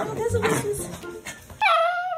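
Bichon Frise puppy whimpering in a high, wavering whine. Near the end a short, bright edited-in sound effect cuts in.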